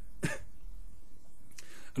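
A man's brief cough-like burst of breath about a quarter second in, then a soft intake of breath near the end, over a low steady room hum.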